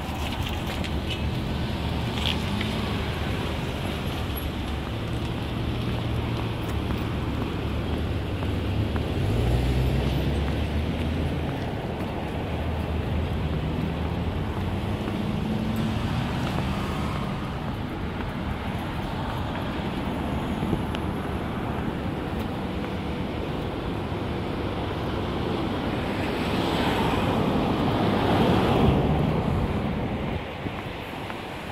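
Steady road traffic noise with some wind on the microphone. A vehicle engine grows louder and passes about ten seconds in, and another swell of noise comes near the end.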